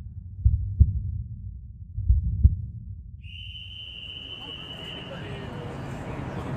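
Heartbeat sound effect: two pairs of low double thumps, lub-dub, about a second and a half apart. About three seconds in, a steady high tone comes in and crowd noise rises beneath it.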